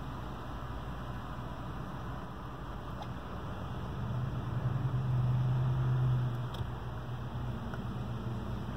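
Car engine and cabin noise from inside a car pulling away: a steady low rumble, with the engine hum growing louder for about two seconds midway as it accelerates, then easing off.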